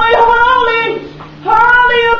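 A young child's high voice singing long, drawn-out notes, with a short break about a second in before the next held note.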